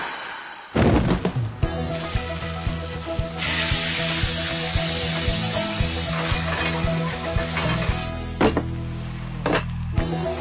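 Background music with food sizzling in frying pans: the sizzle swells in about a third of the way through and dies away at about eight seconds, with sharp knocks along the way.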